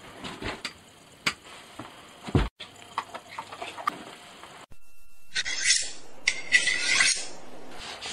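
Handling sounds of gear being got ready: scattered light clicks and knocks, then two stretches of scratchy rubbing and rustling of clothing as boots are pulled on.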